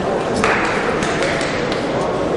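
Sports-hall ambience of crowd voices. About half a second in, a sudden sharp sound starts, rings on and fades over about a second.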